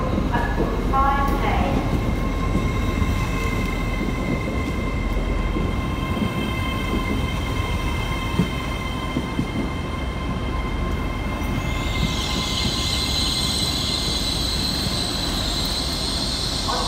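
LNER Class 801 Azuma electric train moving slowly along the platform, with a steady high-pitched whine. A high hiss joins about twelve seconds in.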